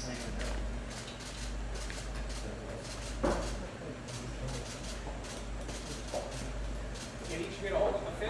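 Indistinct murmur of press-room voices with many quick clicks of camera shutters, over a steady low hum; a short louder voice sound rises about three seconds in and again near the end.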